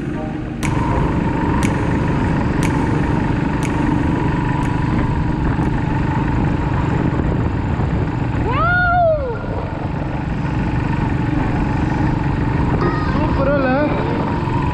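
Motorcycle riding at steady speed on an open road: engine rumble mixed with wind rushing over the microphone. About nine seconds in, a single high whistle-like tone rises and falls, and wavering pitched sounds come in near the end.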